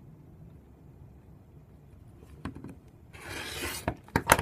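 A couple of light clicks, then a rotary cutter's blunt blade rolling along a steel rule through a strip of Theraband Gold latex, a scraping cut lasting under a second near the end.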